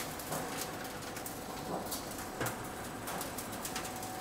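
Ridge cap roll forming machine running, with metal strip feeding through its roller stations: a steady running noise with scattered light clicks.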